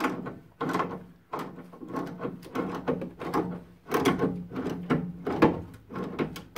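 Pliers clicking and scraping on the brass diverter valve of a Baxi Duo-tec combi boiler as its cartridge is worked loose: a quick irregular run of metallic clicks and knocks, a few a second, over a faint steady hum.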